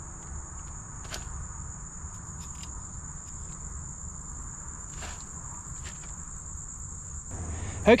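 Steady high-pitched chorus of insects, such as crickets, with a few faint clicks and scrapes from a hand trowel digging charcoal out of a fire pit.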